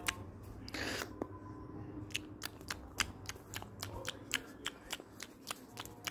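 A short rustle, then a steady run of light, sharp clicks, about three or four a second, from about two seconds in.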